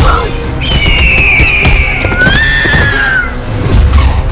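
Action-trailer soundtrack: loud music with heavy bass, cut through by repeated sharp bangs. A high, wavering, sliding tone sounds from about half a second in until past three seconds.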